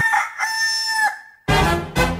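A rooster crowing: the crow ends on a long held final note lasting about half a second, and about a second and a half in a loud, deep burst follows.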